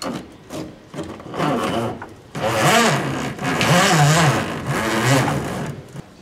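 Quieter scraping and rubbing, then from about two seconds in a power tool's motor runs loudly, its pitch dipping and rising unevenly as if under changing load, until it stops just before the end.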